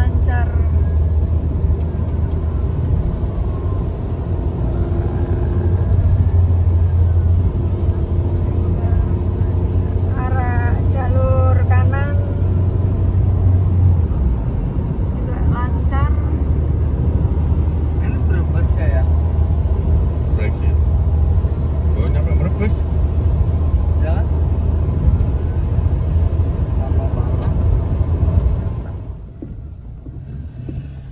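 Inside a moving car on a highway: a steady low drone of engine and tyre noise fills the cabin, with a short break partway through. The noise drops away suddenly just before the end.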